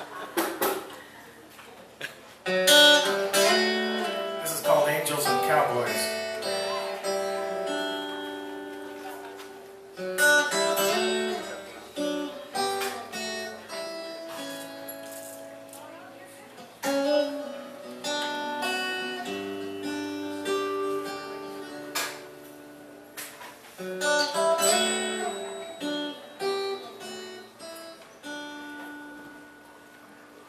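Acoustic guitar intro to a country-style song played live: strummed chords ring out and fade, with a fresh strummed phrase about every seven seconds and no singing yet.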